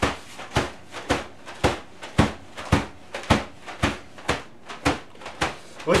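A soft green object whacked repeatedly onto a person's head, about two hits a second in a steady rhythm, around a dozen in all.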